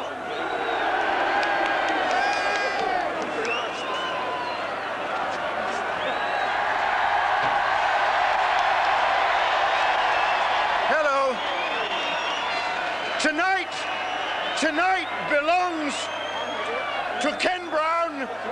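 A large crowd cheering, a dense steady roar that swells about eight seconds in. From about eleven seconds in, loud voices ring out over the crowd in short, rhythmic shouted phrases.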